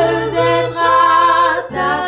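Two women singing a religious song together, holding long notes, over a low sustained keyboard accompaniment.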